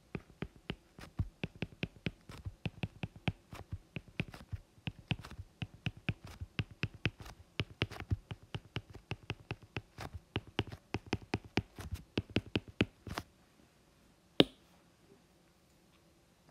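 Stylus tip tapping and clicking on a tablet's glass screen while handwriting, a quick irregular run of small sharp taps, about five a second. The writing stops near the end, followed by one louder single tap.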